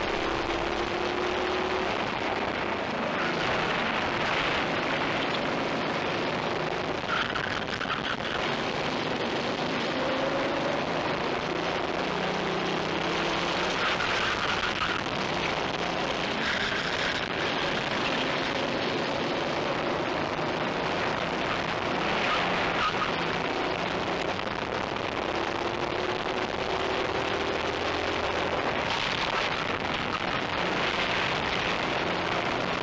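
A racing kart at speed heard from onboard: a steady rush of wind and road noise over the microphone, with the engine note faintly rising and falling as the kart goes through the corners.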